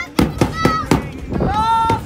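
Voices calling out in short pitched shouts, one rising near the end, over a quick regular beat of clicks about four a second.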